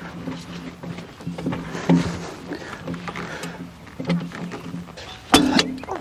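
A man's short, strained grunts while hauling a log splitter by hand, coming in repeated pulses, with a single sharp clunk about five seconds in.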